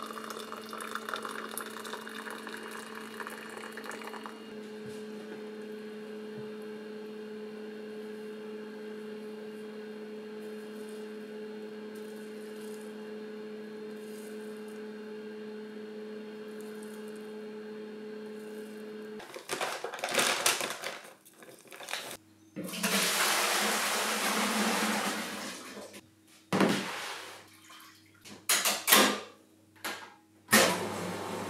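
Water poured from a kettle into a mug for about four seconds, then a steady low electrical hum. From about two-thirds of the way through come irregular rustles and knocks, and a rushing pour lasting about three seconds as flour is tipped from a paper bag into a plastic tub.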